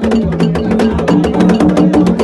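Live percussion music with fast, even strikes like a cowbell or wood block, about ten a second, over drums and steady held low tones.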